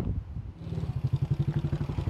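Small motorcycle engine running with a rapid, even putter as the bike rides up and slows. It comes in about half a second in and grows louder.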